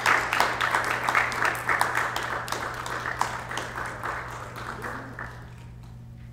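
Audience applauding, thinning out and stopping about five seconds in.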